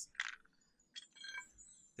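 A faint metal clink and a brief ringing from a steel wheel brace as it is picked up from beside the car jack.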